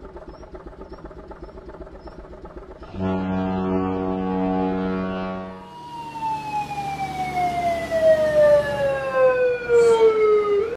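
A low engine rumble, then a ship's horn sounds one long steady blast about three seconds in. Just past the halfway point it gives way to a fire engine siren whose pitch falls slowly and evenly.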